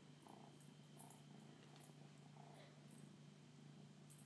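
Near silence: a faint steady low hum with a few soft, faint noises.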